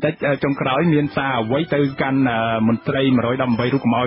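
Only speech: a man talking continuously in Khmer.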